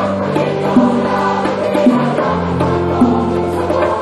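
Middle school choir singing in parts, holding sustained chords, with the lower voices moving to a new note about two seconds in.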